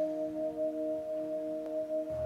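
Backing music of a pop ballad: a soft chord of a few notes held steady, with no singing over it.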